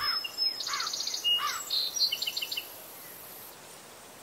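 Birds calling: three arching calls about two-thirds of a second apart, with higher chirps and a short rapid trill over them, all stopping a little under three seconds in.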